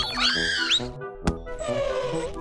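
Cartoon sound effects of a small robot character falling: a squeaky electronic warble that rises and falls, a sharp thump a little over a second in as it lands, then a falling whine near the end, over light children's background music.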